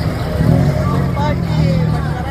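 A car's engine and exhaust running low and steady as the car drives slowly past close by, with crowd voices over it.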